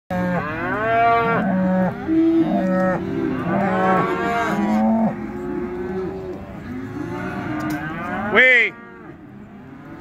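Several cattle mooing and bawling in the pens, their calls overlapping, thickest in the first five seconds, then one loud, short call near the end.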